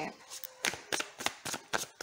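A deck of tarot cards being shuffled by hand: a quick run of sharp card snaps, about three or four a second.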